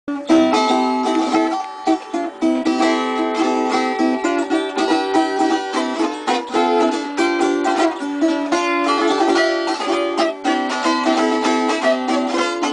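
Brajão, a small Madeiran plucked string instrument, played solo: a fast, continuous melody of picked notes.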